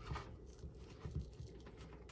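Faint crunching and scraping of a chef's knife sawing through frozen beef suet on a cutting board, with a few light ticks.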